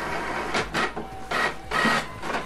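HP Envy 6020e inkjet printer printing a page: the paper feed and print carriage whir and click in short, irregular bursts, with brief whining tones about halfway through and near the end as the sheet feeds out into the tray.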